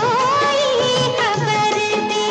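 A Hindi film song plays: a wavering, ornamented melody line over a steady beat.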